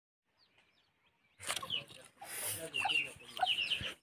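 Chickens clucking and calling, with small birds chirping: faint chirps at first, then louder calls from about a second and a half in, cutting off abruptly at the end.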